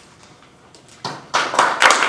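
Audience applause, many hands clapping, starting about a second in and quickly building.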